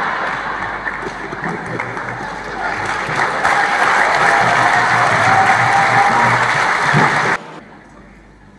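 Audience applauding, with a faint held tone in the middle, the applause cutting off abruptly near the end.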